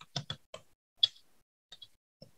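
Computer keyboard being typed on: about half a dozen separate, unevenly spaced key clicks, the loudest about a second in.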